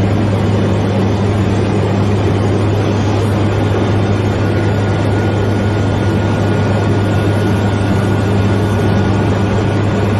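Steady, unbroken low drone of a propeller aircraft's piston engine running at constant speed.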